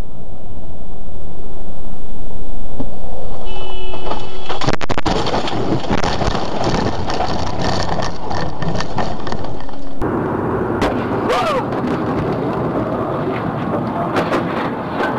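Dashcam recording of loud vehicle road and wind noise, with a burst of crash clatter about five seconds in, after which the noise continues at a lower level.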